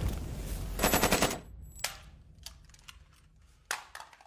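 A short burst of rapid automatic gunfire about a second in, heard as a sound effect over the fading tail of a crash. A few scattered sharp clicks follow, with a louder snap near the end.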